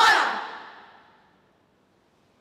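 Children's choir ending its song on a final sung note that cuts off about half a second in, its echo dying away over the next second into faint room tone.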